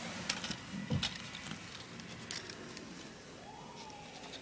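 Handling noise from a handheld camera being moved about: scattered light taps and rustles, with a thump about a second in. A faint tone rises and falls near the end.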